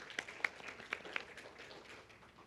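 Light, scattered applause from a small group clapping by hand, thinning out toward the end.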